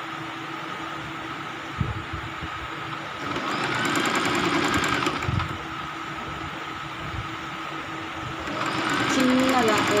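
Domestic electric sewing machine stitching in short runs: one of about two seconds starting a little after three seconds in, and another starting near the end, over a steady low hum. A single knock sounds about two seconds in.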